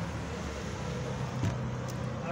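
Steady road traffic noise from a busy avenue, with a low, even engine hum and a single light knock about one and a half seconds in.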